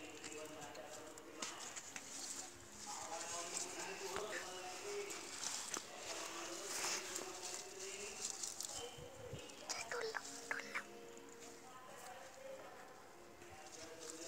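Tomato plants' leaves and stems rustling and giving small clicks as ripe tomatoes are picked off the vine by hand, with faint voices talking in the background.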